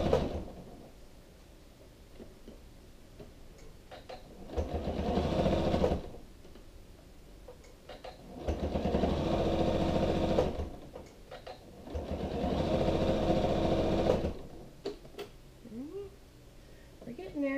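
Janome sewing machine stitching in short bursts. One run stops just after the start, then the machine runs three more times for about two seconds each, with quiet pauses and small clicks between runs.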